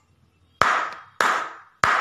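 Three hand claps, evenly spaced about two-thirds of a second apart, each fading away briefly after the strike.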